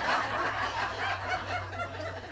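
An audience laughing, the laughter tapering off, over a low steady hum.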